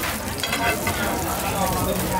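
A folded banana roti frying in oil on a flat round metal griddle, sizzling steadily, with a few brief scrapes and taps of the metal spatulas turning it about half a second in.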